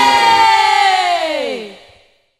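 A singer's long held high final note, unaccompanied now that the drums have stopped, sliding down in pitch and fading out as the qosidah song ends.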